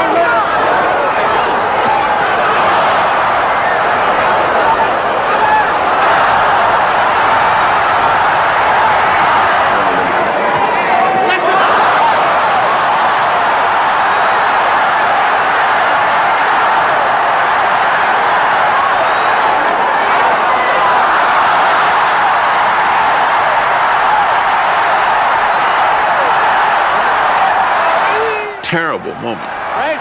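Large boxing-arena crowd cheering and shouting, a dense, steady din of many voices that dips briefly near the end.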